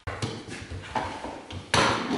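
Knocks and clattering of a walking stick and its hanging beaded ornaments against a wooden floor: a few light knocks, then a louder, brief clatter near the end.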